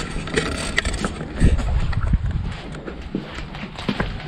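Footsteps crunching and scraping irregularly over a floor littered with broken plaster and ceiling-tile debris, with a couple of heavier thumps about a second and a half and two seconds in.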